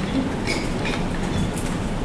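A steady low rumble with a few faint clicks, about half a second, one second and a second and a half in.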